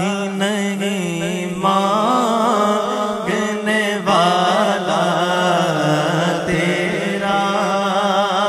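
Male naat reciter singing an unaccompanied devotional naat into a microphone, holding long, wavering melismatic notes with heavy vibrato over a steady low vocal drone.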